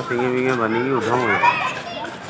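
Voices of children and people calling out and talking, with no clear sound from the animal.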